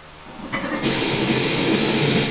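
A block-pull deadlift with a 495 lb barbell pulled off blocks to lockout: the sound rises about half a second in and turns into a loud, steady, noisy rush a little before the halfway point that holds to the end.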